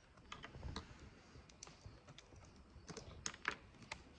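Typing on a laptop keyboard: irregular, quiet keystroke clicks, in a short flurry about half a second in and a denser one about three seconds in.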